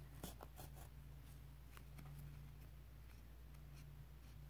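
Faint scratching and rustling of a steel darning needle and yarn being worked through tight crocheted stitches: a cluster of small ticks in the first second, then a few scattered ones, over a steady low hum.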